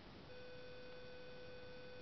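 A faint, steady electronic beep tone that switches on shortly after the start and holds at one pitch.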